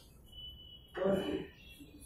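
A person's voice: one short utterance about a second in, over a quiet room with a faint steady high tone.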